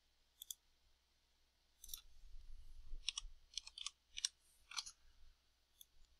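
Faint, scattered clicks of a computer mouse and keyboard keys, about a dozen in all, mostly in the second half, as a word is typed in.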